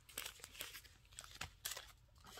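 Individually wrapped adhesive bandages crinkling faintly in the hands as they are sorted, a few short rustles.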